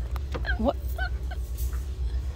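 A woman's short, surprised, high-pitched exclamation, followed by a couple of brief nasal, honk-like vocal sounds, over a steady low hum.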